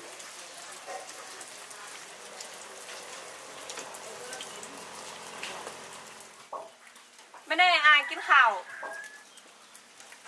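Steady patter of rain that stops abruptly about six seconds in. Then, about seven and a half seconds in, a loud drawn-out call of about a second, wavering at first and falling away at the end.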